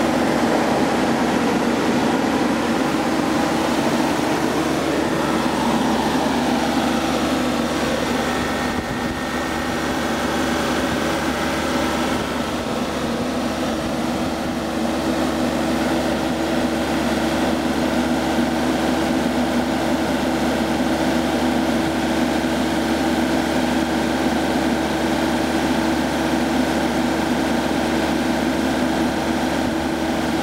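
Yanmar 3TNV84-T three-cylinder turbocharged diesel engine of a John Deere 3245C mower running steadily at a constant speed.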